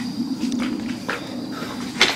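A few faint footsteps scuffing in the dark over a low, steady hum.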